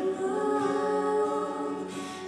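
Live amplified singing: women's voices holding long notes in harmony.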